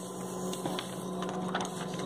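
Steady electrical hum, with a few faint rustles and ticks of paper sheets being moved on a desk.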